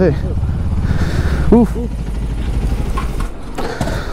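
KTM 390 Duke single-cylinder motorcycle engine idling with a steady low rumble, which eases a little about three seconds in.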